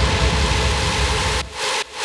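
Hard trance DJ mix at a breakdown: the kick drum stops and a rushing white-noise sweep fills the gap, cut off sharply twice near the end.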